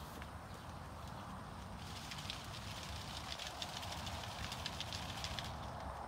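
Faint outdoor background with a steady low rumble, and a few seconds of quick, dense crackling clicks from about two seconds in.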